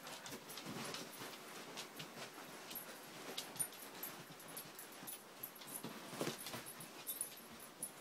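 Two Siberian husky puppies play-fighting: faint, irregular scuffling of paws and mouths, with a few brief, louder dog sounds.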